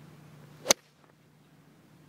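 A golf club striking a ball on a full swing: one sharp crack a little under a second in.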